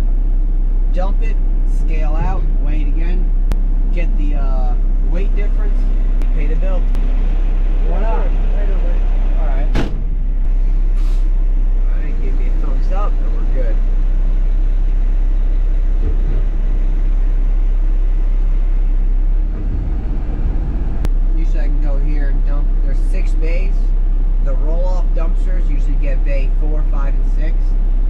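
Garbage truck's engine running, heard from inside the cab as a steady deep rumble under a man's talk. There is a single sharp click about ten seconds in.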